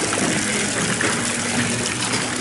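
Water jets of an interactive fountain spraying and splashing into the pool, a steady gushing hiss.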